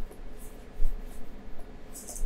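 Stylus strokes on a pen tablet while drawing and writing: a few short, separate scratches over a low background hum.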